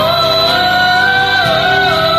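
A woman singing a long held, slightly wavering note over a karaoke backing track, shifting pitch briefly near the end.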